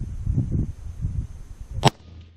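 A single sharp rifle shot near the end from a 6.5 Grendel AR-15, with wind buffeting the microphone in low gusts before it.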